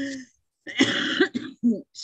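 A woman laughing over a video call, with a cough about a third of the way in, followed by a couple of short laughing breaths.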